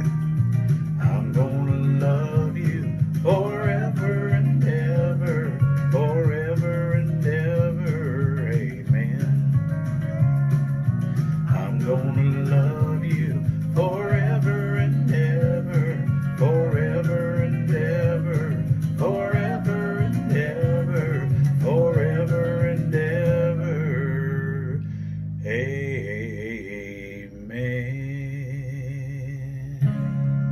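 A man singing the closing lines of a country song over a backing track with guitar and a steady bass. Near the end the band thins out and a sustained ringing note follows.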